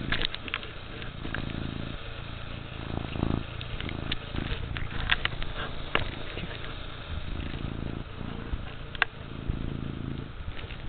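Domestic cat purring right at the microphone: a continuous low rumble rising and falling in slow swells. Scattered sharp clicks and knocks come from the cat pawing at the camera and its cord.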